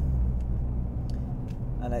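Nissan GT-R's twin-turbo V6 engine running hard under acceleration, a steady low drone that eases a little over a second in.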